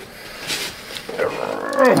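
Mostly a man's drawn-out "there", sliding down in pitch over the second half, after a brief scrape of something handled on the bench about half a second in.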